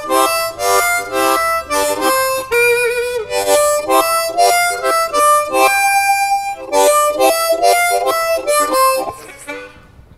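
C diatonic harmonica played in second position (key of G), a slow run-through of a blues riff in short chordal notes shaped by tongue blocking. A wavering note comes about three seconds in and a longer held note about six seconds in, and the playing stops about a second before the end.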